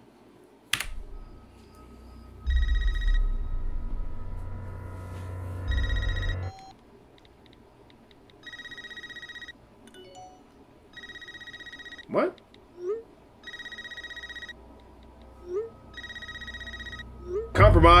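Telephone ringing again and again: six trilling rings, each about a second long and about two and a half seconds apart. A sharp hit about a second in and a low rumble under the first rings come from the trailer's soundtrack.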